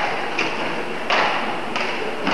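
Badminton rally: sharp knocks of racket strikes on the shuttlecock and footfalls on the court floor, about four in two seconds, the loudest just after a second in.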